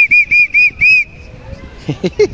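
Toy whistle in the handle of a plastic São João hammer (martelinho) blown in a quick series of short, shrill toots during the first second, the last a little longer.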